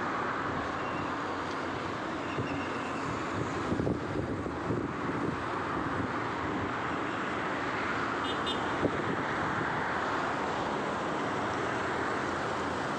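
Steady roadside traffic noise, with wind on the microphone. A brief high-pitched tone sounds a few times about eight seconds in.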